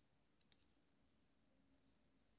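Near silence with a single faint click about half a second in: metal knitting needle tips tapping together as stitches are knitted.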